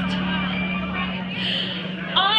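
A female jazz singer's phrase trails off over a held low note from the band, which fades about a second in, leaving a short lull in the music with club room noise and a brief breathy hiss.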